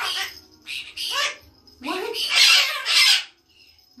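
Pet parrot squawking: several short harsh calls, then a longer, louder one about two to three seconds in.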